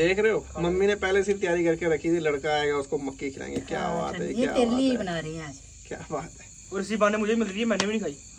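People talking, with a steady chorus of crickets chirping underneath.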